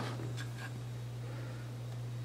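Quiet room tone with a steady low hum, broken by a few faint light ticks about half a second in.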